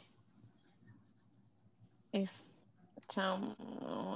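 Brief snatches of a voice over a video-call line, a short sound about two seconds in and a longer one near three seconds, followed by a short scratchy noise near the end.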